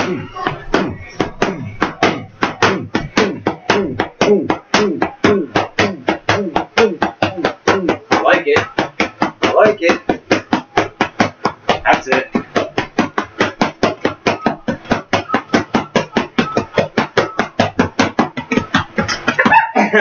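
A child's boxing gloves slapping against focus mitts in a fast, even run of punches, about five a second.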